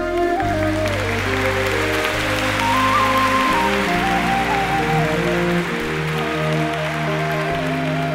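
Live band playing the slow instrumental introduction to a Thai ballad, a single melody line over held chords. Audience applause runs over the music for the first several seconds and dies away about six seconds in.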